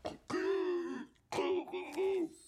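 A man groaning under strain, twice: two drawn-out, pitched vocal sounds, each about half a second to a second long, with a short gap between them.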